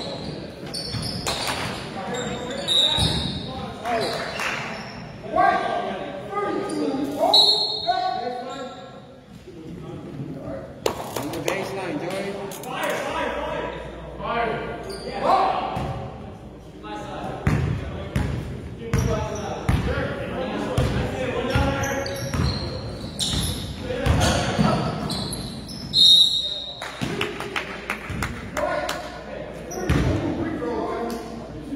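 Basketball game in an echoing gym: a ball bouncing on the hardwood floor among the thuds of play, with spectators' voices and calls and a few short high squeaks.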